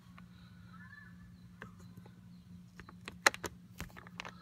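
Faint clicks and taps of a small hand tool and fingers against the plastic steering-column trim, with one sharper click a little after three seconds, over a steady low hum.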